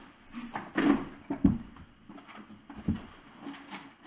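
Kittens scampering and pouncing on a hard floor and rug: a run of soft thumps and scuffles, loudest in the first second and a half, with a brief high rattle about half a second in.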